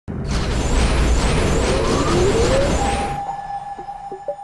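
Logo-sting sound effect: a loud noisy whoosh with rising sweeps for about three seconds. It fades into a single held tone, with a few short plucked notes near the end.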